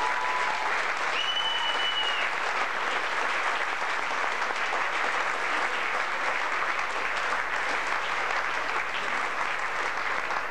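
Audience in a hall applauding steadily and loudly, a dense, even clapping. A brief high steady tone sounds over it about a second in.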